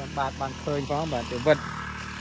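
A man talking over the steady drone of a small engine running without change, from a motorized backpack sprayer misting the rice crop.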